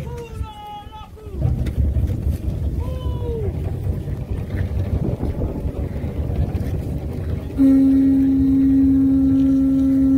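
A conch shell trumpet (pū) blown in one long, steady, loud note that starts suddenly about three-quarters of the way through, over a low rumble of wind on the microphone. Before it, a few short rising-and-falling voice calls.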